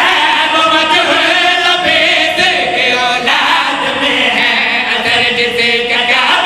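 Several men chanting a devotional chorus together into microphones, unaccompanied, with long held notes.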